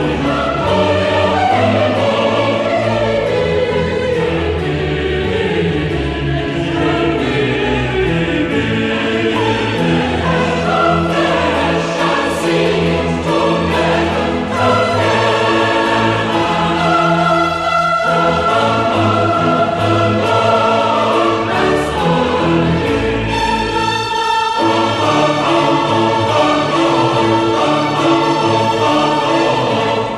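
Choral music: a choir singing over orchestral accompaniment.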